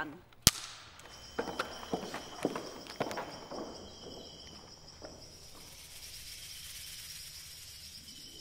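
A film clapperboard snaps shut once, sharp and echoing, at the start of a take. Several light knocks follow over the next two seconds, then faint room tone with a thin high whine.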